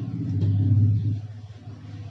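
A small MG90S servo motor on the robot running with a low, steady whirr. It grows louder to a peak just under a second in, then eases off.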